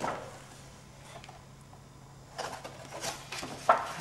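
Quiet at first, then from about halfway soft rustling of paper and thread as a needle and thread are passed through the pierced holes of a folded paper section, with a sharp click near the end.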